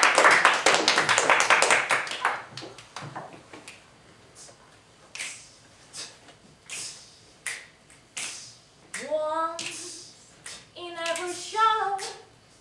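Audience applause dying away over the first two seconds, followed by a few scattered sharp single clicks. From about nine seconds in, a young female voice sings solo, sliding upward on a held note.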